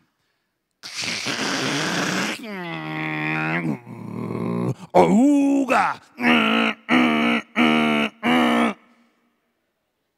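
A man imitating a dial-up modem connecting with his voice. It goes from a hiss of static to a held tone that falls and levels off, then to a lower tone, and ends in a run of short pitched pulses about every half second.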